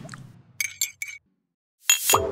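Sound-effect bumper: a teaspoon clinking against a teacup in a quick run of several bright clinks midway, after a whoosh fades out. Another swish starts near the end.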